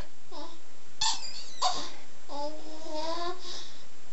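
Seven-month-old baby babbling: a few short vocal sounds, then one long drawn-out vowel about halfway through.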